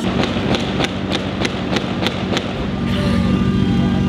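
A crowd clapping in unison, about three claps a second, which stops about two and a half seconds in; a steady low hum then grows louder.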